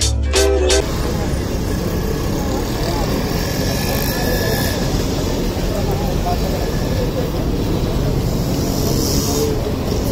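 Background music with a beat cuts off about a second in, giving way to steady street traffic noise with a low rumble of vehicles and faint voices.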